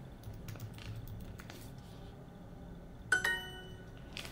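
Computer keyboard typing, light key clicks. About three seconds in, a short bright chime of several ringing tones that fades quickly: the Duolingo app's correct-answer sound.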